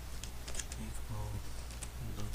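Typing on a computer keyboard: a run of irregular keystroke clicks.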